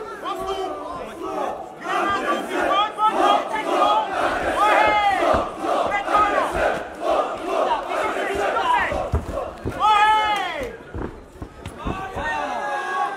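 Fight-night crowd shouting and yelling, many voices overlapping, with one loud shout standing out about ten seconds in.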